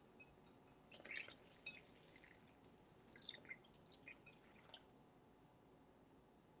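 Faint pouring and dripping of milk from a small ceramic pitcher into a glass mixing bowl of flour: a scatter of small drips and splashes from about a second in until near five seconds.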